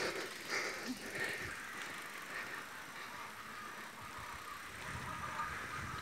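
Mountain bikes rolling along a dirt road: a steady, quiet noise of tyres on dirt, growing a little louder near the end.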